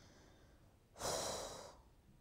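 One audible breath out close to the microphone, about a second in, lasting under a second and fading away.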